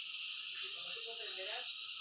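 A steady, harsh high-pitched hiss from a jumble of overlapping video soundtracks, with a brief muffled voice-like sound rising and falling near the middle.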